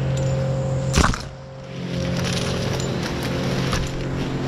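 A steady low hum with one loud, sharp crack about a second in, followed by a brief drop in level before the hum resumes.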